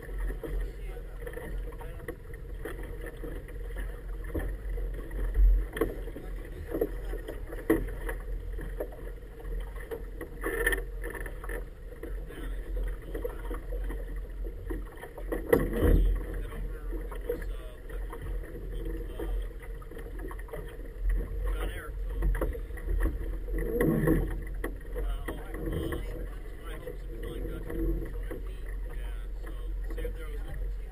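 Outboard motor of a small inflatable powerboat running steadily at low speed, a constant low hum with a steady mid-pitched tone. A couple of brief thumps stand out, about five and sixteen seconds in.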